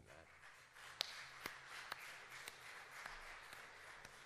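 Faint scattered applause from a congregation: a soft patter of claps with a few distinct, sharper claps about two a second.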